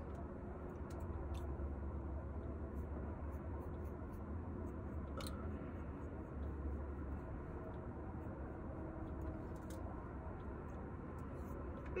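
Steady low hum of room tone, with a few faint clicks and light rustling as a comb is handled and run through short hair.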